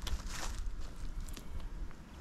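Footsteps of a person walking on a dry grass path, a few separate crunching strikes over a steady low rumble.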